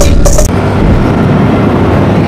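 Intro music cuts off about half a second in. It gives way to the steady noise of a motorcycle riding along, engine and wind on the microphone mixed together.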